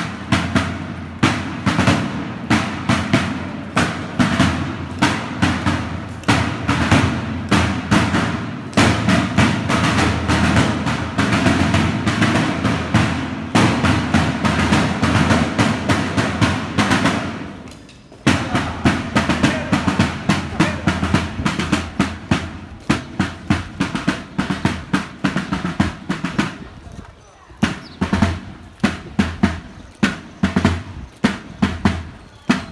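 Rope-tensioned military field drum beating a marching cadence. It stops briefly about two-thirds of the way through, then starts again.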